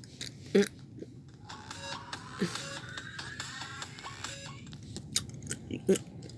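Electronic rising sweep from a DJ mixing app on a phone: a stack of tones that climbs steadily in pitch for about three seconds, with scattered sharp clicks before and after it.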